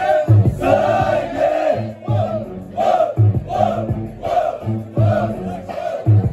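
Hip-hop instrumental beat played by a DJ over the sound system, with a steady kick drum and a repeating sample, while the crowd shouts and cheers over it.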